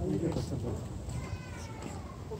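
Low rumble of wind buffeting a phone microphone outdoors, with faint voices.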